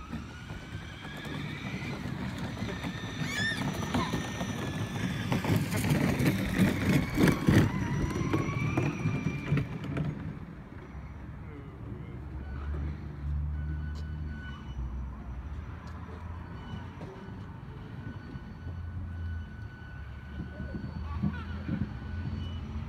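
Electric RC truck's brushless motor whining as it pulls a wagon along the sidewalk, its pitch rising and falling with the throttle, over a clatter of clicks and rattles. Loudest at around six to eight seconds, it fades after about ten seconds as the truck gets farther away.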